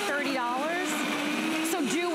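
DASH Chef Series 1400-watt digital blender running on a thick frozen strawberry mix. Its motor pitch sags and climbs back as the load shifts, with a sharp dip near the end.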